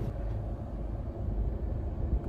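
Steady low rumble of a car heard from inside the cabin, with no distinct knocks or events.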